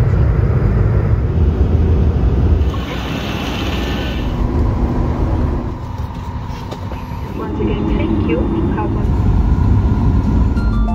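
Jet airliner cabin noise: a low, steady engine rumble heard from inside the cabin, with a brief hiss about three seconds in and indistinct voices in the background.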